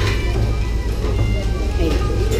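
Background music over a steady low hum, with a single spoken "okay" near the end.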